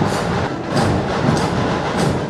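Dhol-tasha drum troupe playing in a street procession: dense, loud drumming with a clashing beat that recurs roughly every half second.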